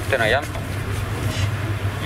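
A man's voice for a moment at the start, then a steady low hum of room noise with no other distinct sound.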